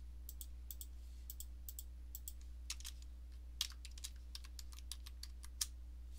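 Typing on a computer keyboard: irregular light keystrokes with a few louder taps, over a steady low electrical hum.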